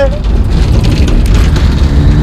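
Turbocharged 3.9 Ford Corcel rally car going by at speed: a loud, steady low rumble of engine and road noise, with a cheer at the very start.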